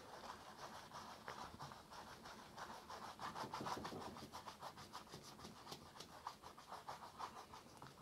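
Paintbrush stroking oil paint onto a stretched canvas: faint, quick strokes repeated several times a second.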